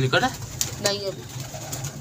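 Domestic pigeons cooing, in short pitched calls near the start and again about a second in.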